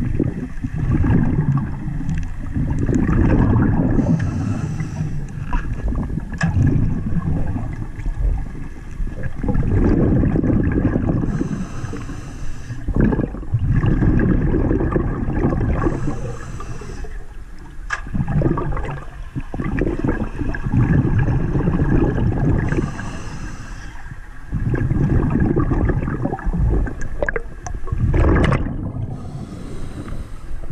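Muffled water gurgling and rushing, heard underwater, swelling and ebbing every few seconds.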